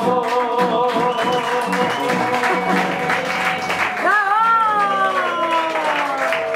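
Male tango singer holding a long note over strummed nylon-string guitar, then starting a new note about four seconds in that swells and slides slowly downward. These are the closing bars of a live tango, just before applause.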